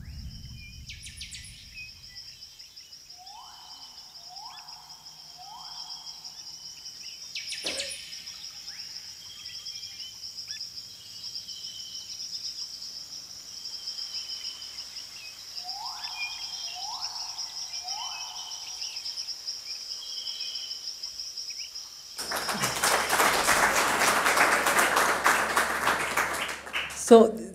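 Rainforest soundtrack of a film played through the hall's speakers: a steady high insect drone with scattered chirps, and twice a run of three rising calls. A loud rush of noise takes over in the last few seconds.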